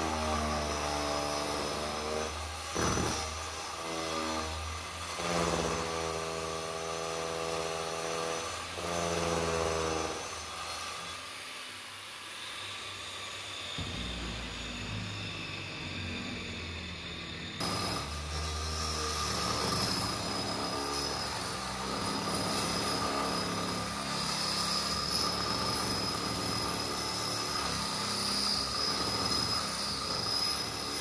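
Large 9-inch angle grinder cutting through the catamaran's fiberglass-and-foam cabin roof, its motor whine falling and rising in pitch as the disc is loaded in the cut. It eases off briefly near the middle.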